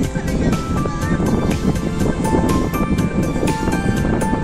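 Background music with a steady beat of about three strikes a second and a melody of held notes.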